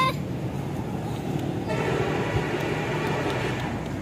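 Steady rumble of vehicle and road noise, with a horn sounding faintly for about two seconds in the middle.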